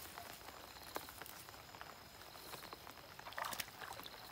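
Faint water sounds of a fish caught in a gill net stirring at the surface: a few soft ticks and a small splash about three and a half seconds in, over a thin steady high-pitched hum.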